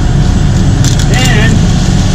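Concrete mixer truck's diesel engine idling, a loud steady low rumble close by.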